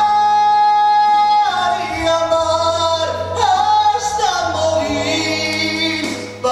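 Male singer singing live without words: a long held high note, then phrases that slide down in pitch, over a steady low instrumental accompaniment.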